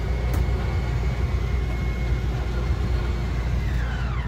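RV slide-out's electric motor running as the bedroom slide retracts: a steady high whine over a low rumble, the whine winding down and stopping near the end as the slide closes fully in.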